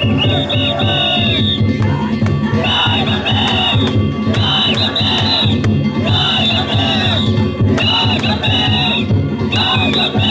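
Danjiri festival float's hayashi: a taiko drum beaten in a fast, even rhythm, with kane hand gongs ringing in bursts of about a second, repeating over and over. Men around the float shout over the music.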